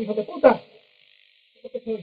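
Speech only: a man speaking in Spanish, then a pause of about a second, then a few more words near the end.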